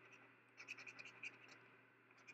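A coin scratching the coating off a scratch-off lottery ticket: a faint run of quick scratching strokes, mostly between about half a second and a second and a half in.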